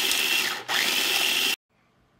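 Small electric food processor pulsing carrot chunks, the motor and blade running loudly in two pulses with a brief break about half a second in, then cutting off suddenly.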